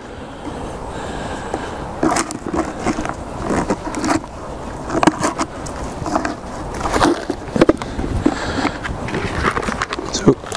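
Irregular scraping, creaking and knocking as a wooden squirrel feeder is worked loose from a tree trunk with a hand tool and lifted down, with a run of sharp clicks near the end.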